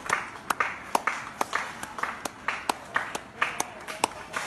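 Hands clapping in a steady rhythm, about two claps a second, each with a sharp click.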